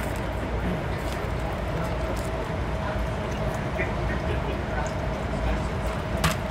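Running noise of a passenger train heard inside the car: a steady low rumble with a constant hum and a few faint clicks.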